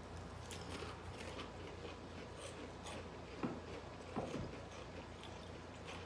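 Chewing of crunchy baked pea crisps: faint, irregular crackles with a couple of louder crunches a little past the middle.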